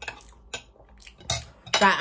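Metal cutlery clinking against a plate, a few separate light clicks with the loudest just over a second in.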